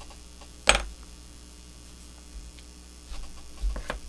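Small tools handled on a tying bench: one sharp click a little under a second in, then a few softer knocks near the end, over a steady electrical hum.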